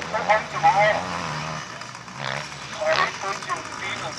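People talking close by, over the steady distant drone of a speedway motorcycle engine running on the track.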